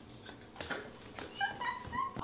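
A few short high-pitched whimpering squeaks, coming closer together and louder in the second half.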